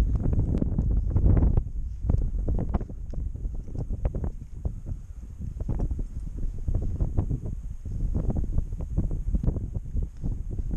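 Wind buffeting the microphone: a heavy low rumble that rises and falls in gusts, strongest in the first second and a half, with scattered faint clicks.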